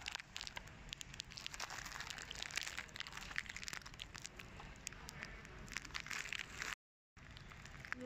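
Crackling and rustling handling noise from a hand-held phone microphone as it is carried and moved, made of many short sharp clicks. The sound drops out completely for a moment near the end.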